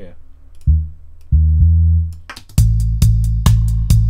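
Synth bass in a reggae stepper bassline: two low notes, one short and one held, then from about two and a half seconds in the bass pounds out even eighth notes over a programmed drum machine beat.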